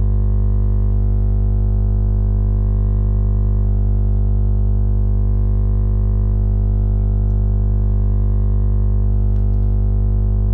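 Loud, steady electrical hum with buzzing overtones on the recording, unchanging throughout. It is a recording fault: mains interference behind the poor audio quality.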